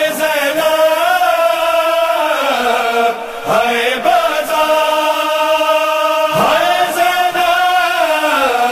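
Chanted vocal opening of an Urdu noha (Shia lament): voices holding long, wavering notes with no percussion, pausing briefly about three seconds in, then starting a new phrase that rises in pitch about six seconds in.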